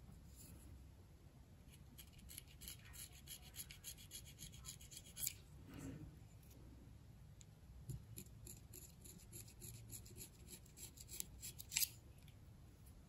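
Reed knife scraping the cane at the tip of an oboe reed over a plaque, in tiny, light strokes that thin the reed: faint quick scratches in clusters, with a sharper stroke about five seconds in and another near the end.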